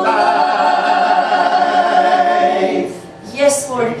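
Gospel vocal trio of two women and a man singing in close harmony, holding the long final chord of the song a cappella for nearly three seconds before it cuts off. A woman's speaking voice starts just after.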